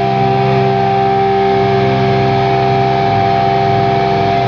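Electric guitar played through an amplifier, one chord held and ringing on steadily with no new strums.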